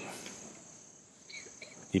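A pause in a man's talk filled by a faint, steady, high-pitched chirring of insects in the background; his voice trails off at the start and resumes right at the end.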